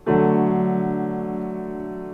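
Piano: a D major chord struck once with the left hand, its notes sounding together and then held, ringing and slowly fading.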